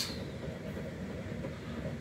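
Steady low background hum of a small room, even throughout, with no distinct event.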